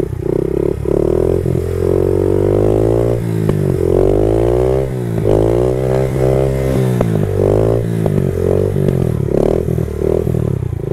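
Honda CRF70 pit bike's small four-stroke single-cylinder engine being ridden, its pitch climbing and dropping several times as the throttle opens and closes and it changes gear.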